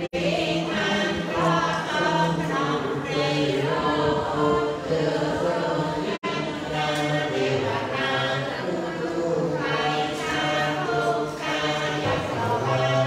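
A group of voices chanting together in long, held melodic notes, in the style of a Buddhist chant. There is a brief gap about halfway through.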